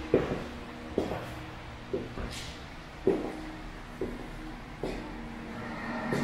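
Footsteps on a hard floor in an empty, unfurnished room, about one step a second, each knock followed by a short ringing echo.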